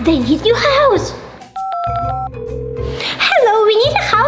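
Phone dialing beeps: a quick run of short keypad tones about halfway through, then a brief steady tone, over children's background music.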